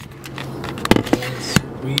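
A car's engine and road noise heard from inside the cabin as a steady low hum, with a few sharp clicks and knocks about a second in and again near the end.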